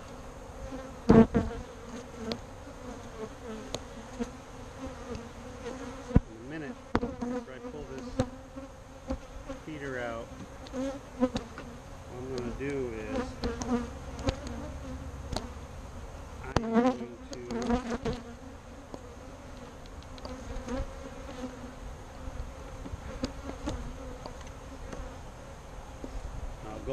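Saskatraz honey bees buzzing around an opened hive: a steady hum, with single bees whining past in rising and falling pitch, from a colony the beekeeper finds a little agitated. A few sharp knocks of wooden frames and hive tool against the hive box are scattered through.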